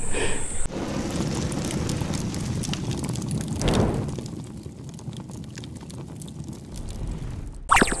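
Rumbling, noisy transition sound effect under an animated logo card, swelling about four seconds in, then fading and cutting off abruptly near the end. High insect buzz, likely cicadas, is heard only in the first second.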